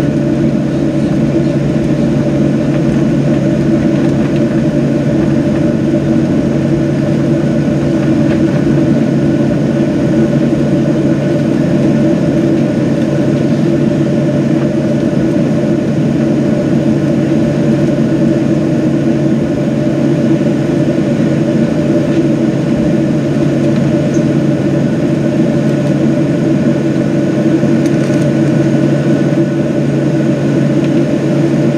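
Cabin sound of a Boeing 737-700's CFM56-7B jet engines running steadily at low taxi power: a constant, unchanging hum with a thin steady whine above it.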